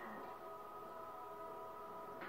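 Faint, steady overlapping tones from a television's speaker, with a short sharper sound at the very start.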